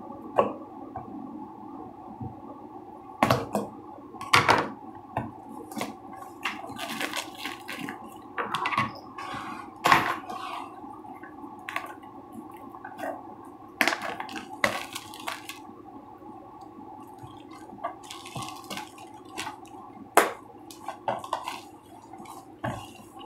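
Clear cellophane wrap being torn and crinkled off a boxed tea set: irregular crackles and rustles, over a steady low hum.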